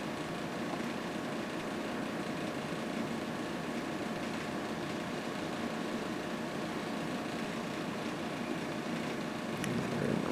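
Steady background hiss with a faint even hum: room tone at an electronics bench with the test equipment running.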